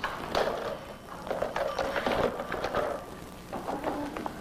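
Hurried footsteps with a run of irregular knocks and clatters.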